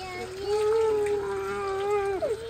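A young child's voice holding one long, steady note for about two seconds, with a drinking fountain's water running faintly underneath.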